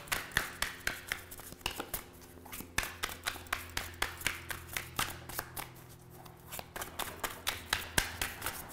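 A tarot deck being shuffled overhand, a quick irregular patter of soft card slaps, about three to five a second, easing off briefly near the end.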